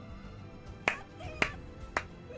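One person's slow hand claps, three sharp single claps about half a second apart beginning just under a second in, over soft background music.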